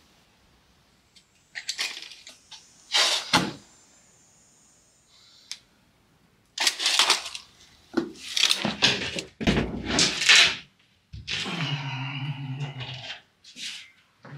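Intermittent knocks, scrapes and clatter of hand work on a concrete footing: wooden blocks and a tape measure being set down and moved. Near the end comes a longer rough sound of a few seconds.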